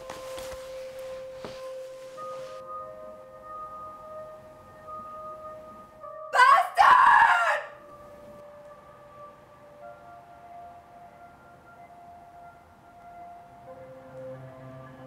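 Film score of long held notes. About six seconds in, a loud, high-pitched human scream breaks in for just over a second.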